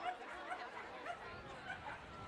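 Dachshunds yapping and yipping, faint and several times in quick succession.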